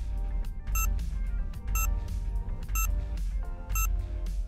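Quiz countdown timer sounding four short, pitched beeps, one a second, as it counts down, over background music with a heavy bass.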